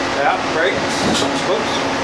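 Steady mechanical rushing noise with a faint hum, like a running fan or blower, under a man's voice saying "Right."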